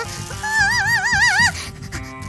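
Background music: a wordless melody line with a wide, wobbling vibrato, holding one wavering note from about half a second in to about a second and a half.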